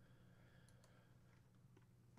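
Near silence: faint room tone with a low steady hum and a few faint clicks.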